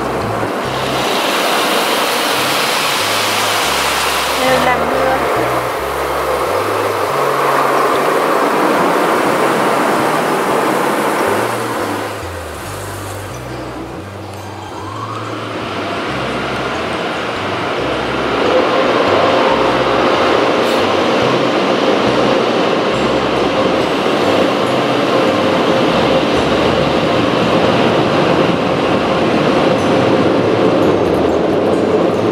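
Automatic car wash spraying water over the car, heard from inside the cabin as a steady rush of spray and machinery. A hissing spray sits on top for the first few seconds, the wash eases briefly a little before the middle, then builds again with a faint steady hum under it.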